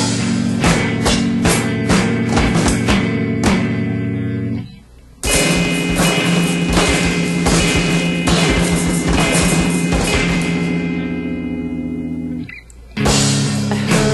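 Instrumental rock passage by a guitar-and-drums duo: electric guitar chords over busy drum kit playing, with no singing. The band cuts out suddenly twice for about half a second, about five seconds in and near the end.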